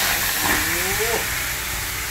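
Seasoned lamb roast searing as it is laid into a stainless-steel Saladmaster electric skillet preheated to 230 °C: a loud sizzle starts suddenly and holds steady.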